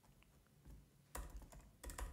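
A few faint keystrokes on a computer keyboard, in short clusters a little over a second in and again near the end.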